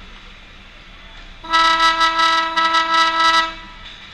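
Ice rink's horn sounding one loud, steady blast of about two seconds, starting about one and a half seconds in.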